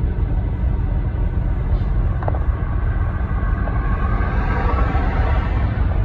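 Steady road and engine rumble inside a moving car's cabin, with a faint hiss swelling about four seconds in.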